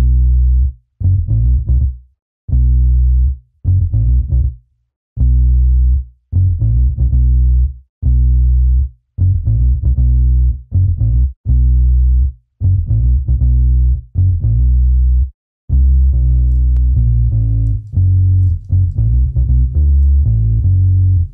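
Sampled Rickenbacker electric bass in a Kontakt plugin playing on its own, a low bassline in short groups of notes with brief silences between. From about three-quarters of the way in, the notes run on without pauses.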